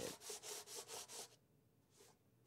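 Sandpaper worked by hand over a painted panel in quick, even back-and-forth strokes, about six a second, stopping after about a second. This is sanding back the paint layers to open up the surface.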